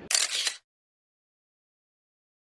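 A camera shutter sound effect: one short, crisp shutter click-clack lasting about half a second at the start, used as a transition between shots, followed by dead digital silence.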